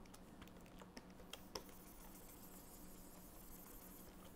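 Faint, scattered clicks from computer input at a desk, several in the first second and a half, over a low steady hum.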